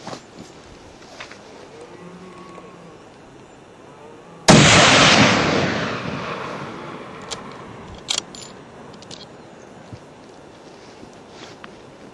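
A single hunting-rifle shot about four and a half seconds in, its report echoing and slowly dying away over two to three seconds.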